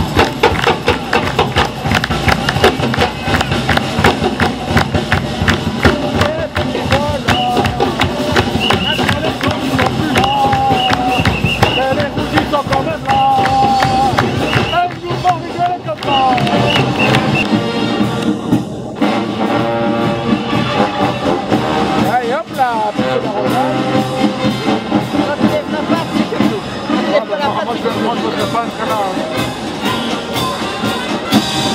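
Parade band music, a steady drum beat under a melody, with crowd voices chattering close by.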